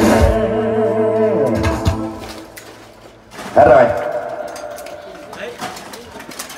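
A live band with an electronic drum kit and keyboard ends its song on a final hit, the held chord fading out over about two seconds. About three and a half seconds in, a man's voice comes in briefly.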